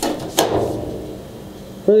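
Two sharp knocks about half a second apart from a sheet-metal panel handled on top of a steel tool box, each with a short ring after it.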